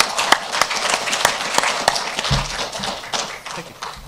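Audience applauding, the clapping thinning out and fading toward the end, with a low thump a little past halfway.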